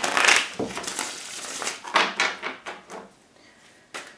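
A deck of tarot cards being shuffled and handled: a second of dense card rustling, then a few short taps and clicks, the last as the cards are set down.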